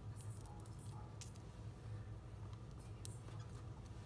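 A few faint, light clicks from hands handling paper and a sheet of foam adhesive dimensionals on a craft table, over a steady low hum.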